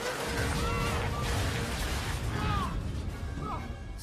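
Dramatic film-score music over a loud, dense low rumble, like an action-scene sound effect, with a few short sliding high notes above it.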